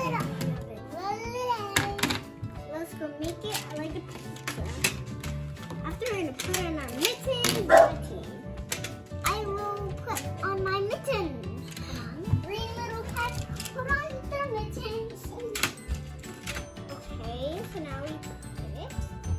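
Children's voices chattering over steady background music, with scattered sharp clicks of plastic magnetic building tiles being handled, snapped together and set into a plastic container.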